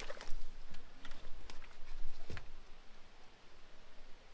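Irregular light snaps and crackles of dry reeds and twigs being brushed past, with soft footsteps in mud; several small clicks in the first two and a half seconds, thinning out near the end.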